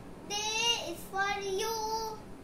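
A young boy singing solo: two held, sung phrases, the first beginning about a quarter second in and the second about a second in.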